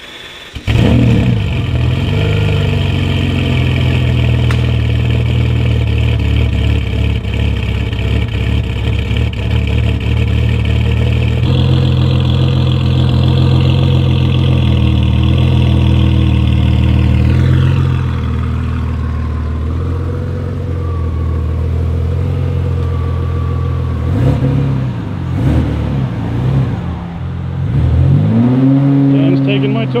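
Ferrari Testarossa's flat-twelve engine starting about a second in and idling. Its idle steps up partway through, then falls back to a lower, steady idle. Near the end come a few revs rising and falling as the car moves off.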